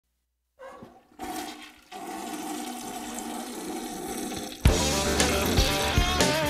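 A toilet flushing as the opening sound effect of a rock song, the rush of water building steadily. About three-quarters of the way in, the band comes in with a loud hit and electric guitars.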